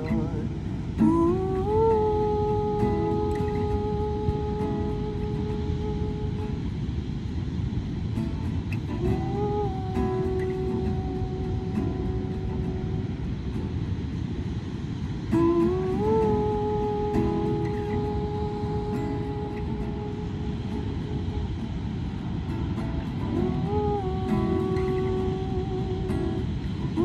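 Acoustic guitar playing under long wordless vocal notes, hummed or sung 'ooh', four phrases that each slide up into a held note. A steady rush of noise from the surf and wind runs underneath.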